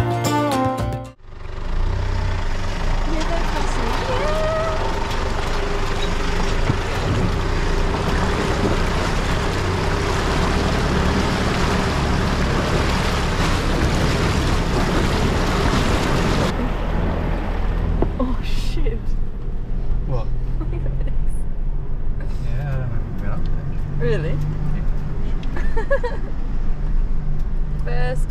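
Four-wheel drive crossing a shallow rocky creek, heard from a camera mounted outside the vehicle: a steady rush of wind and water noise over the low engine drone. About sixteen seconds in it changes to the quieter engine and track noise inside the cab, with faint voices.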